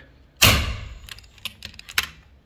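FX Impact M3 PCP air rifle firing once about half a second in, a sharp report that dies away quickly. A few light clicks follow near the end. It is one shot in a quick string fired to test how fast the regulators recover.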